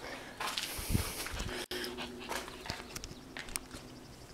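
A small dog making faint sounds close by, among scattered scuffs and knocks of movement over broken concrete.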